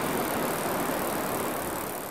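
Steady hiss of a rain sound effect, beginning to fade out near the end.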